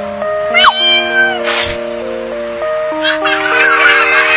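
Background music with held chords, over which a kitten gives one short meow about half a second in. A brief rushing noise follows, and a person's voice comes in near the end.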